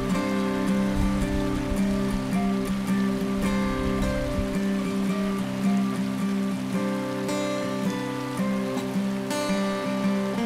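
Background music of held, slowly changing notes, with the steady rush of a shallow creek running underneath.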